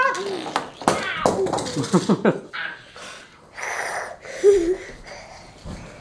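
A young child making playful vocal sound effects for toy cars: short calls and several falling, gliding noises, then breathy hissing sounds. A sharp click comes just before the first second.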